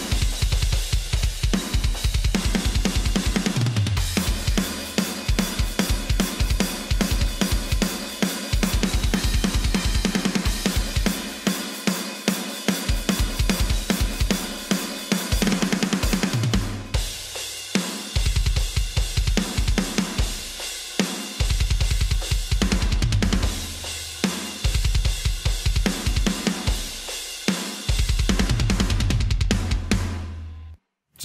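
Metal drum multitrack playing back, with fast double-bass kick drum, snare and cymbals. The snare is run through a DF-Clip clipper plugin to bring back its body.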